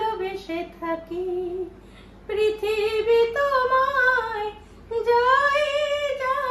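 A woman singing solo, unaccompanied, in long held notes that bend in pitch. She sings in three phrases, with short breaths about two seconds and five seconds in.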